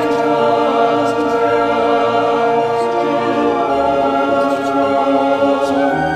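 A choir singing long held notes over an instrumental backing, with the bass notes moving underneath.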